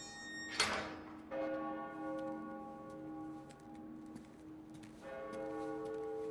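Church bells tolling, with fresh strokes about a second in and again near the end, each ringing on in several long overlapping tones. A single sharp hit sounds about half a second in.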